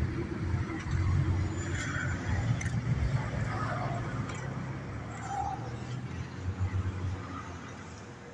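Low, uneven rumble of a car engine running, with faint voices in the background; it fades toward the end.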